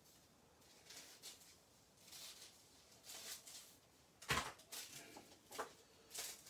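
Quiet handling of card, paper and scissors on a wooden craft table: faint rustles and scrapes, with one sharp knock about four seconds in and a lighter click shortly after.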